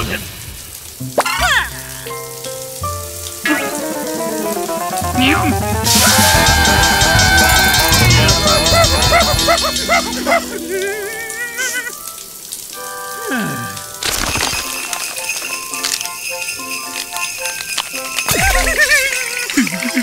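Cartoon score and comic sound effects over the hiss of a running shower, with wordless yelps and grunts from the character as the water turns scalding and then icy. A few rising and falling pitch slides run through it.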